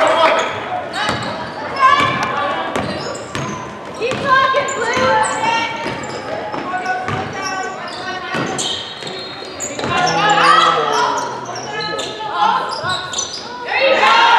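A basketball bouncing on a hardwood gym floor during play, with short high-pitched sneaker squeaks and players' and spectators' voices, all echoing in a large gymnasium.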